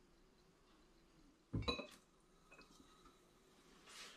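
Near silence, broken about one and a half seconds in by a brief clink of glass bottles knocking together, with a short ring.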